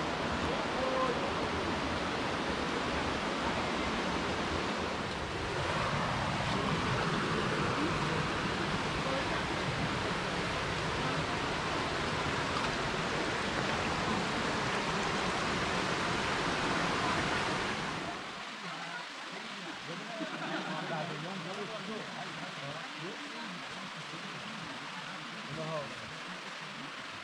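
Steady rush of a shallow stream running over rocks, which cuts off abruptly about two-thirds of the way through, leaving quieter outdoor ambience with faint distant voices.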